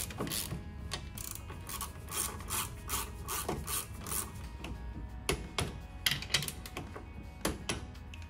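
Ratchet wrench and hand tools working on a race car's brake caliper: irregular clicks, scrapes and knocks of steel tools as the caliper nuts are done up.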